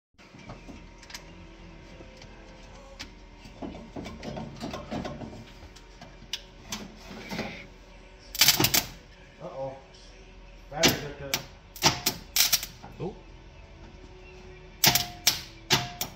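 Sharp metal clicks and clanks of a steel pry bar levering against a seized AMC 304 V8, trying to break the engine free, in bursts with a brief metallic ring, heaviest about halfway through and again near the end.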